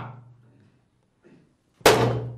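A single sharp clang-like hit near the end, ringing briefly as it decays.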